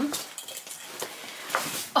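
Shopping items and their packaging being handled: rustling with a few light knocks, and a sharper knock at the end.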